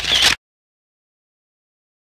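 A brief harsh burst of noise in the first third of a second, then dead digital silence: the sound track drops out completely.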